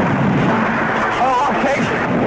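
Steady, dense rumble of battle noise from artillery fire and explosions, with a brief wavering voice-like cry a little past the middle.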